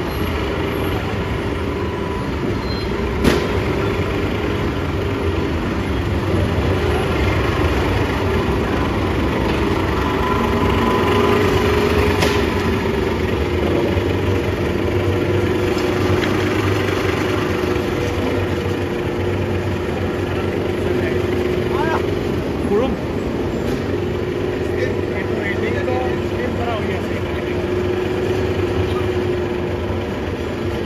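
Steady machinery drone: a held mid-pitched hum over a low rumble, with a sharp click about three seconds in and another about twelve seconds in.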